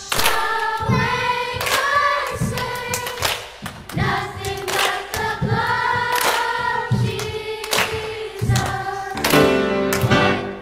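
Youth choir of mostly girls' voices singing a gospel hymn in unison, accompanied by piano on a steady beat.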